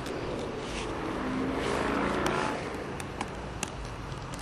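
A vehicle passing by, its hum swelling and fading across the middle, followed by a few light clicks near the end.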